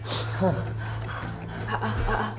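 A person's sharp, breathy gasp, then a brief voiced cry, over a steady low hum.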